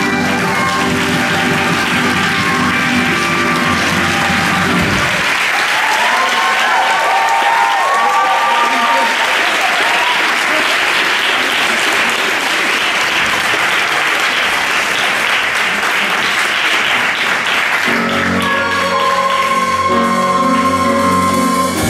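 A theatre audience applauding, with a few shouted cheers, as the song's final held chord stops about five seconds in. The applause carries on until instrumental music starts again near the end.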